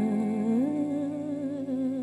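A female singer humming a long wordless note with vibrato, stepping up to a higher held note about half a second in.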